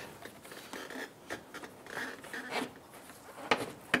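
Faint handling noises of a plastic car bumper cover being worked into place: light rubbing and small ticks, with two sharp clicks near the end.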